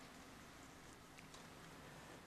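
Near silence: faint room tone with a couple of faint clicks, about a second in, from the headphone headband's plastic parts being handled.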